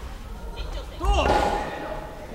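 A short, loud shouted call about a second in, starting with a sharp hit, echoing in a large gym hall over background chatter.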